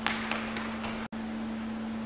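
Running shoes striking a gym floor as a sprinter drives out of a three-point start: about four quick footfalls within the first second, the first loudest, the rest fading as he runs away. A steady hum sits underneath, and the sound drops out abruptly for an instant just past a second in.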